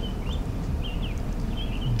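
A songbird singing a string of short, slurred chirps, repeated about every half second, over a low steady rumble.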